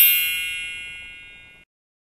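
A bright bell-like chime sound effect: several high ringing tones that fade out evenly and then cut off suddenly to silence about a second and a half in.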